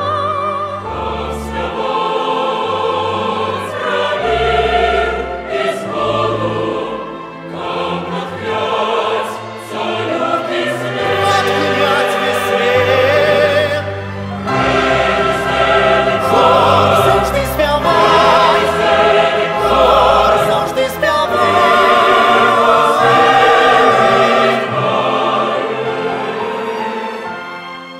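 Large mixed choir singing with a symphony orchestra, sustained notes with vibrato over a low bass line holding long notes. The music grows louder about halfway through.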